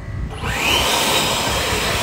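Battery-powered leaf blower starting up about half a second in, its motor whine rising quickly, then running steadily with a rush of air, aimed at a wet car.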